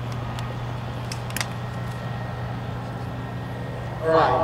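Piper Cub's piston engine droning steadily in flight, with a few brief clicks about a second in.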